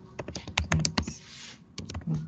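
Typing on a computer keyboard: a quick run of keystroke clicks, a short pause, then a few more keystrokes near the end.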